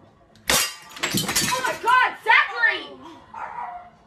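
A sudden crash of something breaking about half a second in, followed by high-pitched yelling and cries that fade out near the end.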